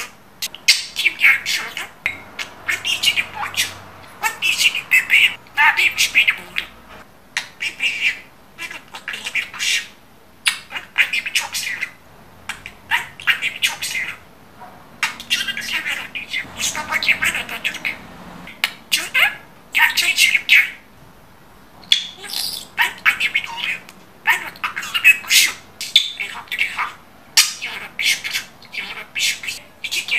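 Budgerigar warbling and chattering in high-pitched runs of a second or two, with short pauses between.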